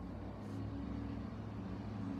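Quiet, steady low motor hum in the background, a few low tones held evenly through the pause.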